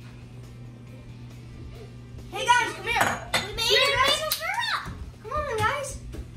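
A steady low hum for about two seconds, then children's voices rising and falling in pitch, along with music.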